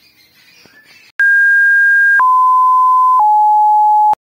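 Three loud, pure electronic beep tones played back to back, each about a second long and each lower in pitch than the last, starting about a second in. They are an intro sound effect.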